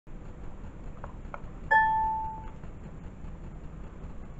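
A single bright electronic ding, a pure tone that fades out within about a second, about a third of the way in. It is the DVD menu's selection chime as the language choice is confirmed. Two faint clicks come just before it, over a steady low hum.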